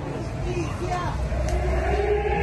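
A siren starts sounding about half a second in, its pitch rising slowly as it winds up, over a low rumble and a few crowd voices. At the AMIA commemoration a siren marks the minute of the 1994 bombing.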